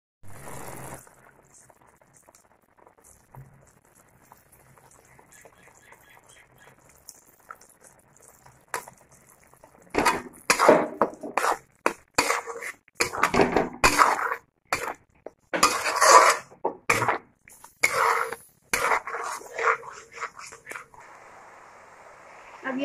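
A spatula scraping and stirring a thick onion-tomato masala around a metal kadhai. It is faint for the first several seconds, then from about ten seconds in comes a long run of loud, irregular scraping strokes against the pan.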